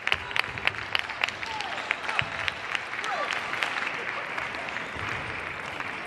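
Table tennis balls clicking off bats and tables at many matches in a sports hall, rapid at first and thinning out after about two seconds, over a general murmur of voices.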